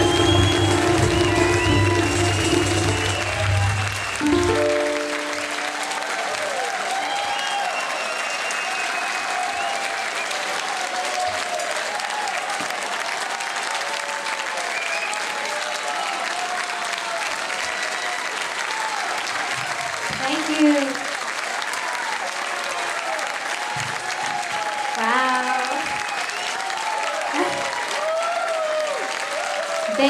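Amplified ukulele and cajon end a piece on a held final chord, with a last short chord about four and a half seconds in. Then the audience applauds steadily with scattered cheers.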